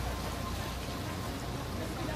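Steady hissing background noise with a low rumble underneath.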